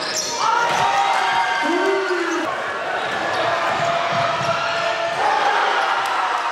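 Basketball game in a large gym: the ball bouncing on the hardwood court among voices shouting from the players and crowd.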